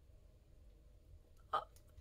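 Quiet room tone with a faint steady hum, then one short hesitant "uh" from a woman near the end.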